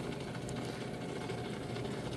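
Steady churning and bubbling of compost tea in a stainless tub, aerated by a running Aero Mixer, heard as an even low noise.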